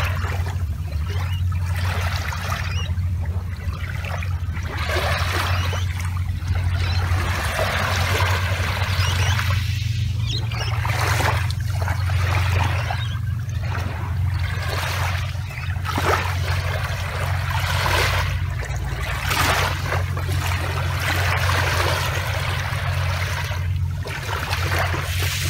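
Small waves lapping and washing onto the shore, the wash rising and falling every second or two, over a steady low rumble.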